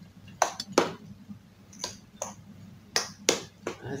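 A metal spoon clinking against a stainless steel mixing bowl while stirring dry flour: about eight sharp clinks at uneven intervals.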